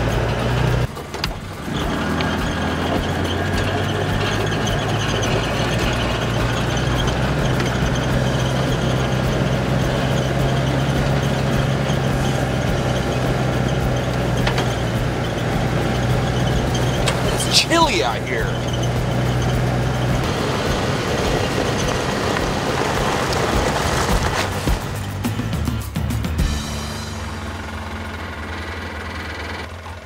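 A Polaris Ranger utility side-by-side running as it drives, mixed with background music. A brief falling squeal comes about two-thirds of the way in, and the sound drops in level near the end.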